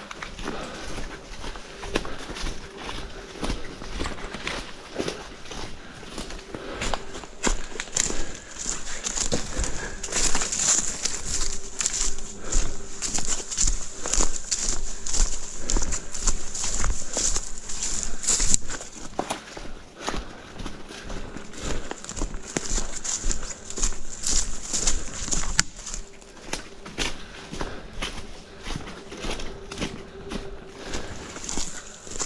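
Quick footsteps crunching through dry leaf litter, with brush and branches swishing past, loudest in the middle stretch.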